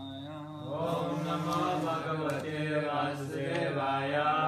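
Devotional chanting: a voice chanting a prayer in long, drawn-out notes, growing louder just under a second in.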